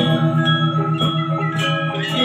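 Balinese gamelan ensemble playing: bronze metallophones and gong-chimes ringing together in many layered tones, over a low note struck rapidly about eight times a second.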